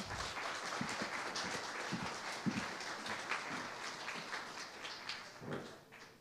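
Audience applauding: a crowd of scattered hand claps that tails off near the end.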